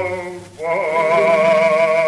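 Male solo voice singing with vibrato on a 1931 recording. One sung phrase ends early, and after a brief breath a long held note begins about half a second in, over steady low accompaniment.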